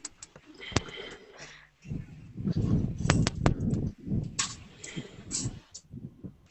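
Several sharp clicks and patches of muffled, indistinct noise over an online video call, with no clear voice coming through: a participant's microphone not carrying his speech.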